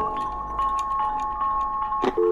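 Sustained chime-like electronic tones, two main notes held steadily with faint ticking above, used as sound design.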